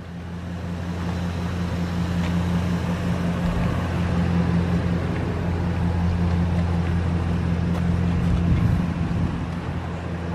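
Ford Econoline van's engine idling steadily: a low hum under a haze of outdoor noise, growing louder in the middle and easing near the end.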